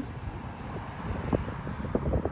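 Low rumbling handling noise with a couple of faint, soft knocks as stacked plastic plant pots are held and turned.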